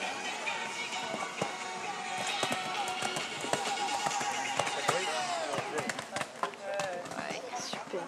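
Indistinct voices of spectators over background music, with scattered knocks.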